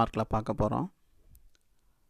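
A man's voice speaking for about the first second, then quiet with a single faint click partway through the remaining pause.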